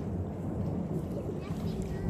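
A passing train heard across the water as a steady low rumble.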